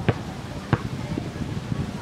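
Steady outdoor background noise with two short clicks, one just after the start and one less than a second in.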